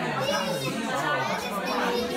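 Voices of several people talking over one another.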